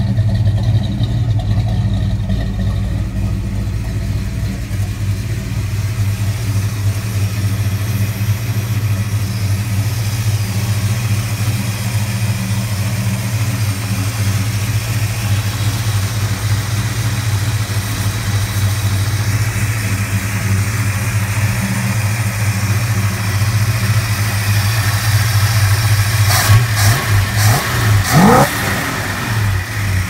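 Buick 455 V8 with big-port heads, an Edelbrock Performer intake and a large Crower cam, idling steadily through its exhaust. Near the end there are a few brief knocks and a short rising whine.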